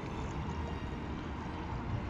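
Steady outdoor background noise, heaviest at the low end, with no distinct event standing out.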